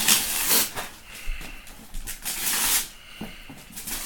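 Gift wrapping paper being ripped off a cardboard box in several quick tears, the loudest at the start and again about two seconds in.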